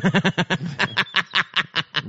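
Hearty laughter in a quick run of short "ha" bursts, several a second.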